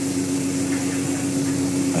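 Steady electrical-sounding hum with constant hiss, the background noise of the lecture recording, with no other sound over it.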